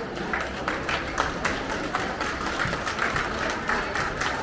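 A small group applauding by hand, with irregular, overlapping claps throughout.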